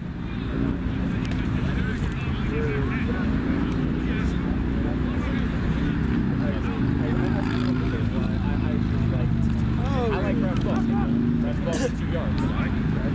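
Steady low rumble of nearby road traffic, with distant players' shouts and calls across the pitch, loudest about ten seconds in.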